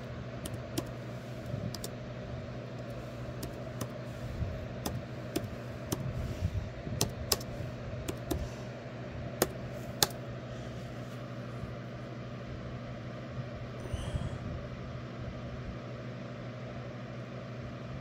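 Scattered clicks of laptop keys and touchpad, mostly in the first ten seconds, over a steady low background hum.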